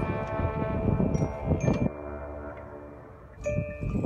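Marching band front ensemble playing a soft percussion passage: chimes and mallet keyboard notes ringing over a few low drum hits, as the full band's chord fades at the start. New ringing notes enter near the end.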